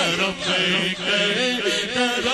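Several men's voices chanting and wailing at once over a microphone. Their pitches waver and slide down, over a held low note.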